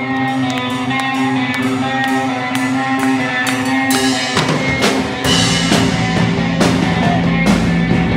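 Live rock band with electric guitar and drum kit: held, ringing notes for the first four seconds, then the drums come in and the full band plays on.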